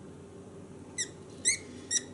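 Three short, high-pitched squeaks, each rising in pitch and about half a second apart, from a Surefire Minimus headlamp as it is worked by hand on its headband.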